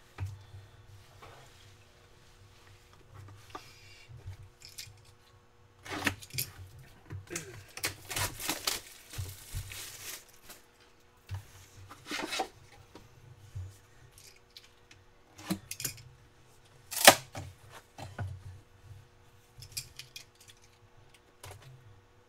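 Cellophane shrink-wrap being torn and crinkled off a sealed trading-card box, among the knocks and clicks of cardboard boxes being handled and opened. The longest stretch of crackling comes before the middle, and the loudest sound is one sharp knock about three-quarters of the way through.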